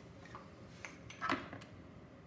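A few light clicks and rattles of wiring and plastic connectors being handled, the loudest a little past a second in.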